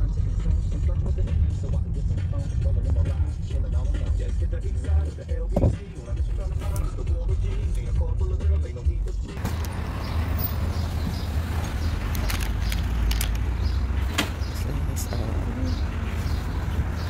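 Low, steady car engine and road rumble heard inside the cabin as the car rolls through a parking lot. About nine seconds in it cuts to open outdoor noise with scattered sharp clicks and knocks.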